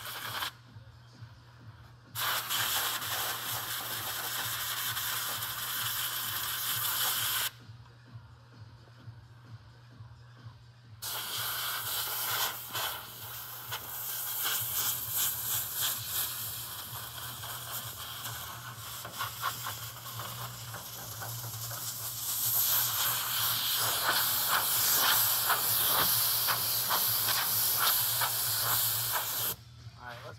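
Compressed-air blow gun hissing in bursts against a bare-metal car body: a brief blast, then one of about five seconds, then a long blast of nearly twenty seconds that gets louder near the end, with short pauses between.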